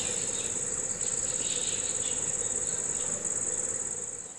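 Crickets trilling: a steady, high-pitched chirr that runs on without a break except for two brief dips.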